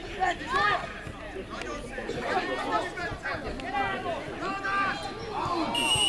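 Sideline spectators' voices at a youth football match: several people talking and calling out over one another throughout. A short, high, steady tone sounds near the end.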